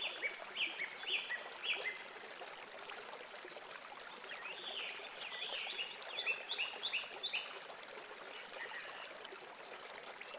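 Small garden songbirds chirping: a run of short, downward-sliding chirps at the start and a longer run of them in the middle, over a steady background hiss.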